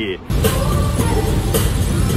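Steady rush of rain and tyre noise heard from inside a car driving on a wet highway in heavy rain, cutting in suddenly just after the start.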